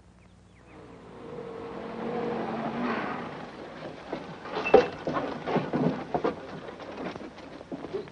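A jeep engine runs as it pulls up, rising in level over the first few seconds. A series of knocks and thumps follows as passengers climb out, the loudest about five seconds in.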